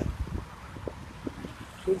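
Wind rumbling unevenly on a phone microphone outdoors, with faint traffic noise from a wet road.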